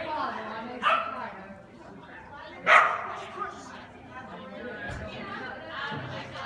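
A dog barking twice, about a second in and again just under two seconds later, the second bark the louder, over a murmur of people talking.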